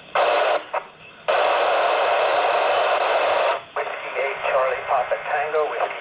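FM radio static from a handheld transceiver receiving the ISS repeater downlink: a short burst of hiss, then about two seconds of steady loud hiss as the noisy signal opens the squelch. After that a weak voice comes through the noise and a call sign begins near the end.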